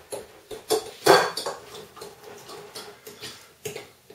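A utensil stirring and scraping wet fritter batter in a ceramic bowl, with irregular clinks and knocks against the bowl, the loudest a little after a second in.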